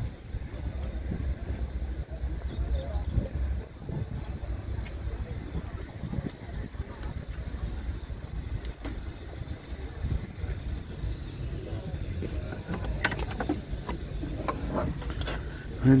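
Steady low outdoor rumble, with a few sharp clicks and knocks near the end as the tailgate of a 1992 Opel hatchback is unlatched and lifted open.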